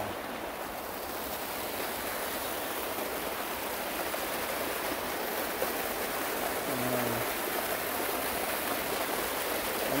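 Hot spring water running steadily over white travertine terraces, an even rushing hiss.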